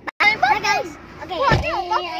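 Children's voices, calling out and chattering in a lively, playful way, with a very brief cut in the sound just after the start. About one and a half seconds in there is a dull low bump as the phone is grabbed and handled.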